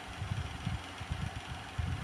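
Ballpoint pen writing on a notebook page, heard as irregular soft low taps and bumps of the pen strokes against the paper and desk, over a steady faint hum.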